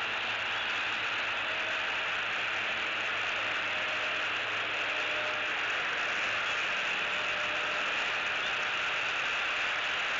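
Steady, even outdoor hiss picked up by the nest camera's microphone, with no distinct calls or sudden sounds.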